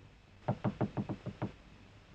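Knocking on a door: a quick run of knocks lasting about a second.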